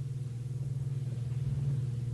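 A pause between spoken phrases, holding only a steady low background hum with faint hiss.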